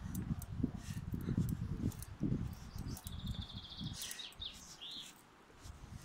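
A songbird sings a rapid, even-pitched trill about halfway through, followed by a few short rising notes. Underneath run louder low thuds and rumble from footsteps and the handheld phone moving as someone walks down a tarmac path.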